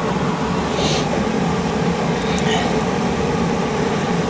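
Kitchen extractor fan running with a steady hum, over vegetables frying in a pan, with a couple of light scrapes of a spatula about one and two and a half seconds in.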